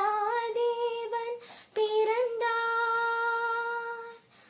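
A girl singing solo and unaccompanied, holding long sustained notes with small glides between them. A short breath about a second and a half in, then one long steady note.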